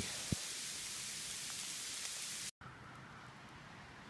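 Steady hiss of sleet falling. The sound cuts out for a moment about halfway through and comes back quieter.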